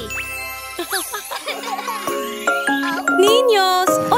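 Children's cartoon music with tinkling chime notes and sliding, swooping pitched sounds.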